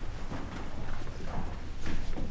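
Footsteps of several children walking on a hard floor, irregular steps over a low steady hum.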